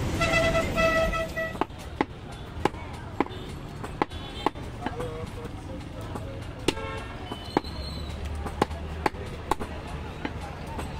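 A butcher's cleaver chopping through a goat leg on a wooden block: sharp blows at an uneven pace, roughly two a second. A horn honks twice in the first second or so, over street noise.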